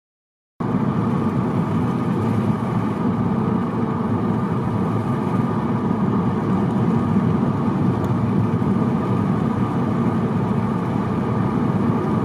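Steady road noise inside a moving car: tyres and engine at cruising speed, heard through the cabin as an even, unchanging hum. It starts abruptly about half a second in.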